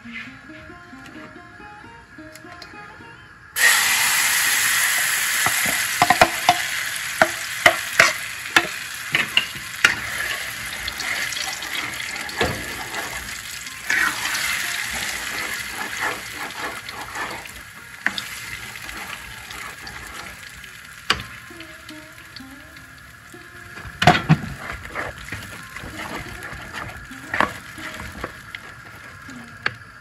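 Ground chana dal and split-pea paste hitting hot oil in a pan: a loud sizzle starts suddenly about three and a half seconds in and slowly dies down as the paste cooks. A wooden spatula stirs and scrapes it throughout, with sharp clicks and a louder knock against the pan near the end.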